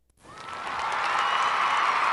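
A small group clapping, starting a moment in and swelling quickly to a steady applause.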